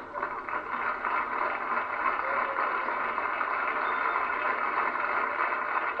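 Studio audience applauding and laughing, a steady wash of clapping that holds for several seconds.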